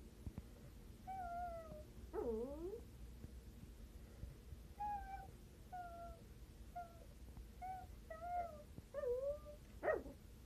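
Miniature Pinscher whining: a louder swooping whine about two seconds in, then a string of short, high whines about once a second.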